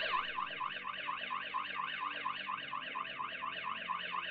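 Aqara M2 hub's security alarm siren sounding: a steady, fast warbling electronic siren, about five rising-and-falling sweeps a second. It signals that the alarm has been triggered because the door sensor was opened while the system was armed and not disarmed within the entry delay.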